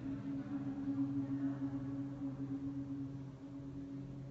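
A group of people humming together, a steady low drone held on one pitch with a second tone an octave below.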